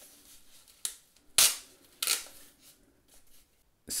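Silver anti-static plastic bag crackling and snapping as a small electronics unit is pulled out of it: a few separate sharp crackles, the loudest about a second and a half in.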